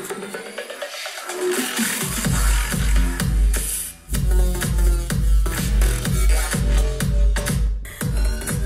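Bass-heavy electronic music played through a Devialet Silver Phantom speaker and heard in the room. The bass is absent for the first two seconds, then comes in with a deep pulsing beat about twice a second, with a brief break about four seconds in.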